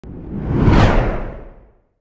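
Whoosh sound effect for an animated logo intro: a single rush with a deep rumble under it, swelling to a peak just under a second in, then fading away.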